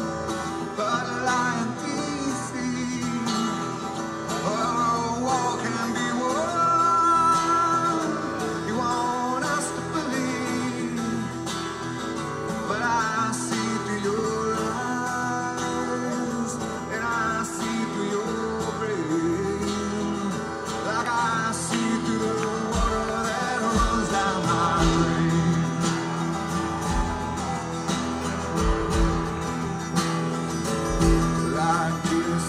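A man singing live over his own strummed acoustic guitar, a slow folk song. Low thumps join in about two-thirds of the way through.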